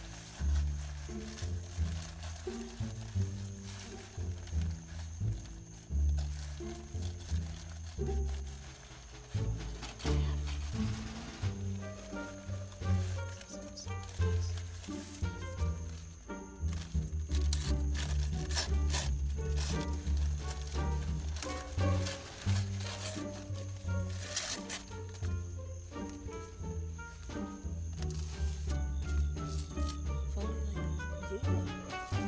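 Background music with a deep bass line that steps between notes, a melody above it and light ticking percussion.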